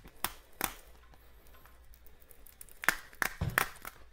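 Plastic ice-cream-cone candy container being worked open by hand: a couple of sharp plastic clicks in the first second, a quiet pause, then a few more clicks and knocks near the end.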